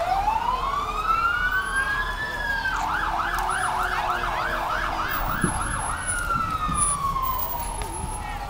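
Fire truck's siren sounding: a rising wail over the first two seconds, then a fast yelp at about four cycles a second for some three seconds, then a long falling wail.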